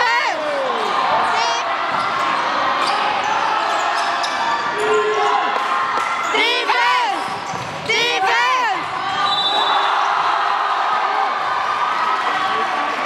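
Basketball game on a hardwood gym floor: sneakers squeak sharply in clusters near the start, around six and a half seconds and around eight seconds, with the ball bouncing, over steady chatter from players and spectators in a large hall.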